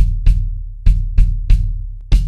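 Kick drum fitted with an Evans EMAD head, struck five times in a short uneven pattern. Each stroke is a sharp beater click over a low boom that dies away.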